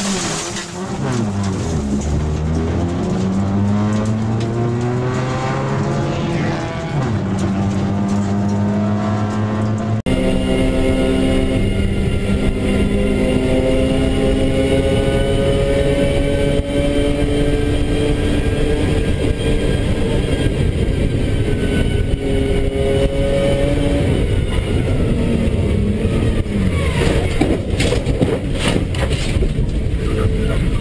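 Car engine heard from inside the cabin, revving and pulling up through the revs. After a sudden cut about a third of the way in, a race car's engine is held at high revs with small rises and falls as the driver works the throttle, with a few sharp knocks near the end.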